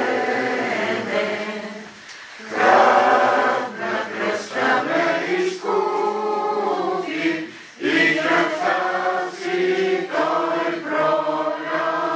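A congregation singing together in sustained phrases, with short breaks between phrases about two seconds in and again about eight seconds in.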